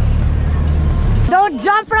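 Outrigger boat's engine running with a steady low hum, which cuts off abruptly a little over a second in; voices follow.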